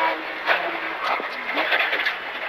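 Porsche 911 997 GT3 rally car's flat-six engine running under way, heard inside the cabin over steady road and tyre noise, with a couple of short knocks about half a second and just over a second in.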